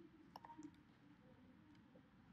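Near silence with a few faint computer keyboard key clicks as code is typed.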